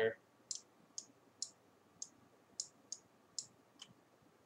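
Computer mouse clicking: about eight short, sharp clicks, irregularly spaced roughly half a second apart.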